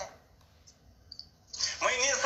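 A man's voice from a video call on a phone speaker stops at the start, leaving about a second and a half of near silence with a faint click or two. Speech resumes near the end.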